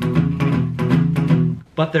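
Les Paul electric guitar playing a boogie-woogie style shuffle rhythm on the low strings, an even chug of picked notes that stops shortly before the end.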